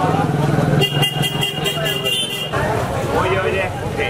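A high-pitched horn sounds for about a second and a half, starting about a second in, with a fast pulsing to it, over voices and street noise.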